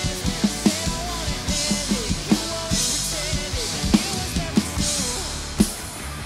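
Acoustic drum kit with Zildjian cymbals played along to a rock backing track: a steady groove of kick and snare hits, with crash cymbal washes every second and a half or so, over the song's gliding lead melody.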